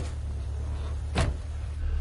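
A car door shuts with a single thud about a second in, over the steady low rumble of the car's idling engine.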